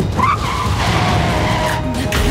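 A car's tyres screeching in a long squeal that starts just after the beginning and carries on for over a second, sliding slightly lower in pitch.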